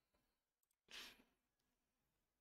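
Near silence broken once, about a second in, by a short, soft breath out, like a sigh or a nasal exhale.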